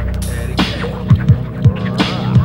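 Instrumental hip hop beat from a 1990s cassette: deep kick drums that drop in pitch, a sharp snare hit, light hi-hat ticks and a steady low bass tone underneath.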